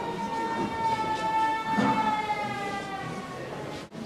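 A single long held high tone, sinking slightly in pitch over about three and a half seconds, over a low murmur of voices in a large room; it breaks off abruptly near the end.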